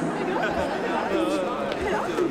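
Several people talking at once: indistinct chatter of overlapping voices.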